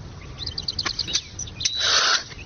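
A small bird chirping in a quick run of short, high notes, then a brief rush of noise near the end.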